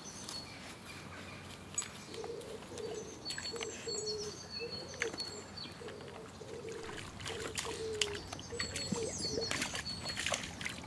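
A pigeon cooing, a run of low, repeated coos starting about two seconds in, over small birds chirping. Scattered crackles of twigs and light splashes come as a dog steps through sticks into shallow water, busier near the end.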